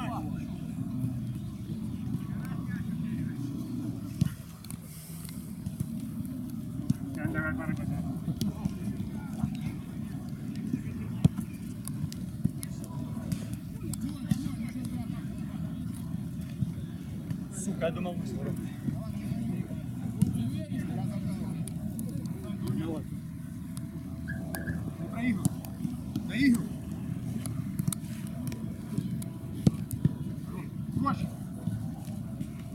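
Five-a-side football match sounds: distant players' shouts and calls over a steady low rumble, with a few sharp knocks of the ball being kicked.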